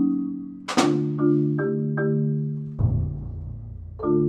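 Live percussion ensemble music on a marimba: held mallet chords and a few single notes, broken by one sharp, bright hit about a second in and a deep low hit, like a bass drum, that rings out near the end.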